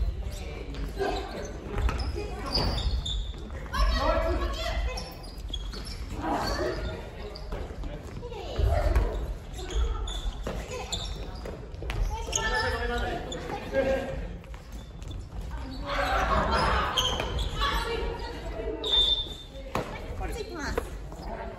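Badminton rally in a gym hall: rackets striking the shuttlecock and footsteps on the wooden floor, with players' voices and calls echoing around the hall.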